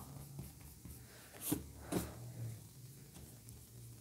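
Plastic eraser rubbing out pencil marks on a Hobonichi Weeks planner page: faint rubbing, with two brief louder strokes near the middle.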